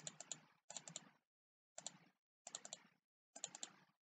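Faint computer mouse clicks, in quick groups of two or three about once every second, as the picture viewer's navigation button is pressed repeatedly to page through photos.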